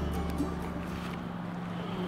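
Background music ending on a held low note that fades away.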